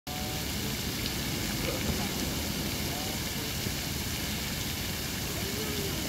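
Lake fountain's water jets spraying and falling back onto the water surface: a steady, even rushing splash.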